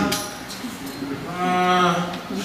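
A man's voice over a microphone drawing out words in long notes held at one steady pitch, the longest near the end: a preacher's intoned, sung-out sermon delivery.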